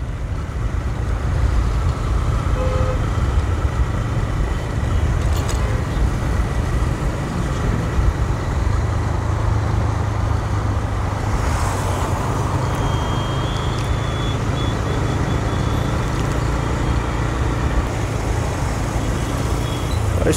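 Riding a TVS Raider 125 motorcycle at steady cruising speed: its small single-cylinder engine running evenly under a heavy rush of wind and road noise on the microphone, with traffic alongside.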